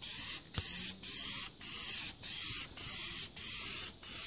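Aerosol can of Dupli-Color black spray paint hissing in a run of short sprays of about half a second each with brief pauses between, as light side-to-side passes of a first coat are laid on. A single sharp click comes about half a second in.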